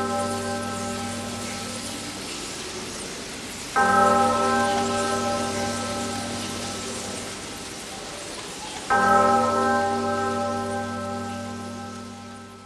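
A deep church bell tolling, struck twice about five seconds apart, each stroke ringing on and slowly dying away, over a steady hiss of rain.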